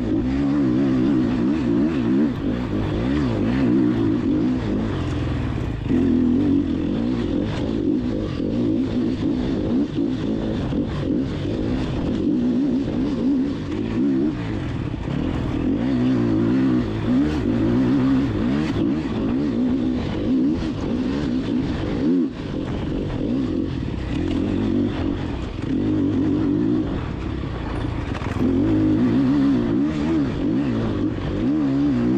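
Enduro motorcycle engine under load, its pitch rising and falling continuously with throttle and gear changes as the bike is ridden along a trail. About two-thirds of the way through, the engine noise drops briefly when the throttle is rolled off.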